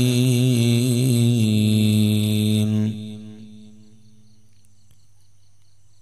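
A man's voice chanting an Arabic invocation through a microphone and loudspeakers, the melody wavering and then settling into one long held note. The note ends about three seconds in and dies away with echo, leaving only a faint hum.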